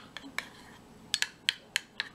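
Metal spoon clinking against the sides of a small ramekin while stirring dry mustard and water into a paste. About half a dozen sharp clinks, with a short pause in the middle.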